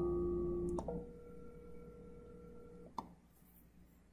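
Softphone call-progress tones as a test call is placed: a short steady tone for under a second, then a steady ringback-like tone for about two seconds. A sharp click follows about three seconds in.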